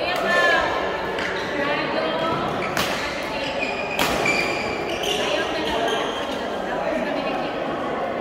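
Badminton rackets striking a shuttlecock during a doubles rally in a large sports hall. Two sharp hits stand out, about three and four seconds in, over a background of voices.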